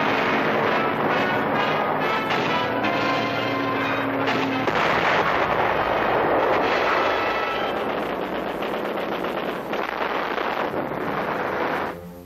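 Old film soundtrack of loud orchestral music with many held notes, mixed with battle noise of gunfire and explosions that thickens in the middle.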